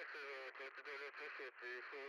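A faint, thin voice coming over a radio, like two-way radio chatter, the words unclear.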